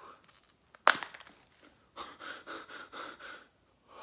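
A sharp sudden sound about a second in, then a run of rapid, short nervous breaths or whimpers, about five a second, from a frightened person.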